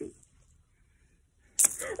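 A single sharp click from a small hard object about one and a half seconds in, followed at once by a startled voice.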